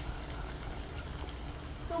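Faint, steady sizzle of beaten eggs beginning to cook in a nonstick pan over sautéed bitter melon, over a low steady hum.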